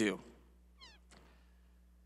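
A man's voice finishing a word, then quiet room tone with one brief, faint, high-pitched squeak about a second in and a soft click just after.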